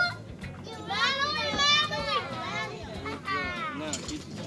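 Children's high-pitched voices calling out and chattering without clear words, in two stretches with a pause between.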